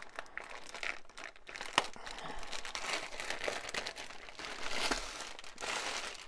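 Clear plastic sleeve crinkling and rustling as a rolled canvas is worked out of it by hand, with one sharper click a little under two seconds in.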